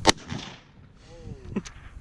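A single .30-06 rifle shot about a tenth of a second in, with a short trailing echo. A brief voice exclamation follows about a second later.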